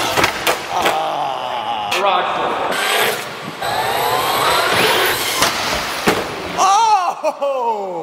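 Traxxas RC monster truck's electric motor whining up and down in pitch as it is driven, with several sharp knocks as the truck strikes a metal rail and lands on concrete. A shout comes near the end.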